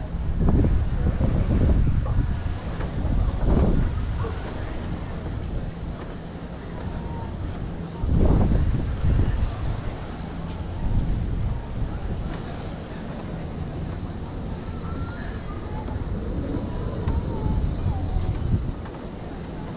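Wind buffeting the microphone in gusts, loudest about half a second in and again around eight seconds, over a low steady engine hum.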